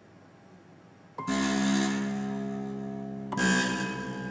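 Concert harps sounding two loud plucked chords, the first about a second in and the second near the end, each with a sharp attack that rings on and slowly fades. Near silence before the first chord.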